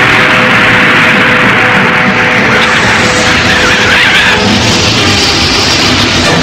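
Film soundtrack music overlaid with a loud rushing, hissing sound effect that eases off after about four seconds.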